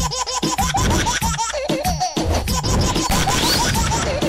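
Upbeat title-theme music with a fast, steady beat and a short repeating melodic figure.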